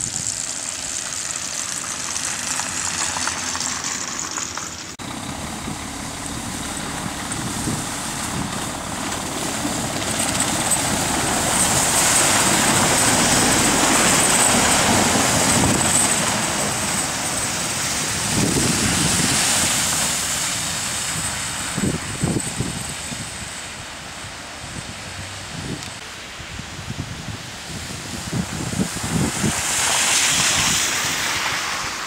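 A large box truck drives past on a slush-covered road, engine running and tyres hissing through the slush. The noise swells to its loudest about halfway through and then fades back to lighter traffic noise.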